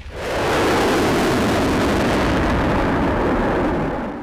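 Lockheed Martin F-35 Lightning II fighter flying past with its single turbofan engine in afterburner: a loud, steady jet roar. It swells in over the first half-second and eases off just before the end.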